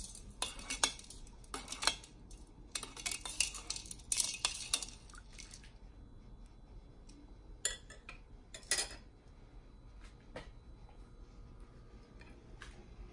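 Long metal ladle stirring liquid in a stainless steel pot, clinking and scraping against the pot's sides in a busy run for the first few seconds, then a few separate clinks.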